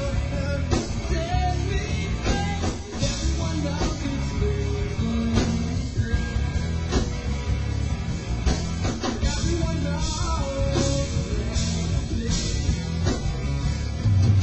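Rock band playing a song live, with guitar, drum kit and singing. The music carries on without a break.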